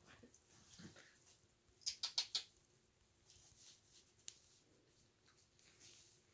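A puppy playing on a disposable pee pad, its paper rustling and scratching under it: four quick, sharp scratchy strokes about two seconds in, then faint rustles and a single click.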